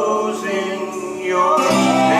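A mixed vocal trio singing a gospel song in close harmony over acoustic guitar, holding long notes and moving to a new chord about one and a half seconds in.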